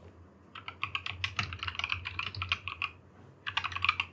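Typing on a computer keyboard: a quick run of keystrokes lasting about two and a half seconds, a short pause, then another brief burst of keystrokes near the end.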